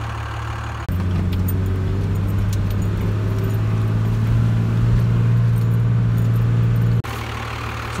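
A pickup truck's engine droning steadily while the truck is driven slowly on a dirt road, heard from inside the cab, with light rattles over it. It is quieter for the first second and the last second.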